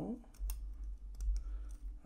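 Light metallic clicks and taps of a folding knife's pocket clip and small screws being handled as the clip comes off the handle, irregular, with a low rumble of hands moving on the work mat.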